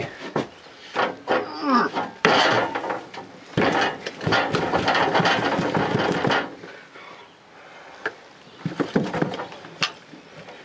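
A wooden molding flask knocked and lifted off a sand mold, then a rush of casting sand pouring out of it for about three seconds as the mold is broken out.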